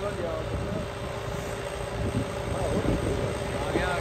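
Tractor engine running steadily under load as it drags a disc harrow through loose ploughed soil, a continuous low rumble.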